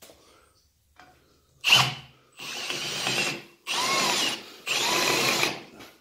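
Hand drill spinning a #4 ORX Plus / Bar Champ chamfer tool against the end of a hardened steel rod (about 50 to 55 hardness). A short burst comes first, then three cutting runs of about a second each, with a motor whine that rises and falls. The cut is jumpy, and a burr is left on the rod.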